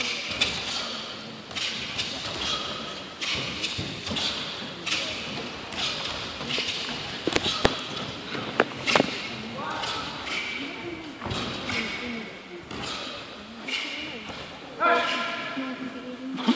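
Sharp snaps and thuds from two taekwondo competitors' uniforms and feet on the mat as they perform a pattern, echoing in a large hall, with voices in the background and a louder voiced call near the end.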